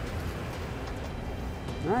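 Steady low background hum with no distinct mechanical sounds, then a man's voice saying "Alright" at the very end.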